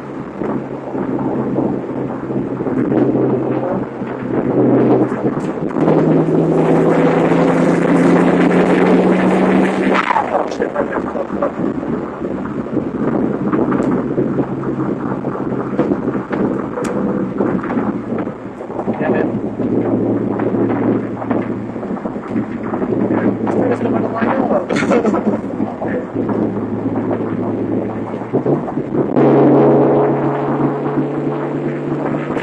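Twin-turbo V6 of a Mitsubishi 3000GT VR-4 with upgraded 19T turbos, heard from inside the cabin at freeway speed. About six seconds in it pulls hard, its note rising and getting louder, then drops off sharply around ten seconds in and settles back to steady cruising.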